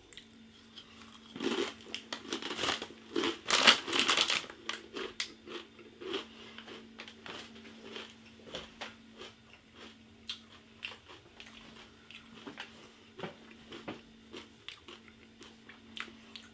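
A rolled Takis Fuego tortilla chip bitten and chewed: loud, crisp crunches for a few seconds after the first bite, then a long run of softer chewing crunches. A faint steady hum sits underneath.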